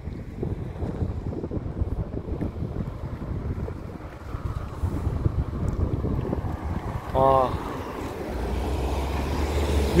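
Wind buffeting the camera microphone outdoors, a continuous low rumble. There is a brief vocal sound about seven seconds in, and a low steady engine hum joins near the end as a car comes by.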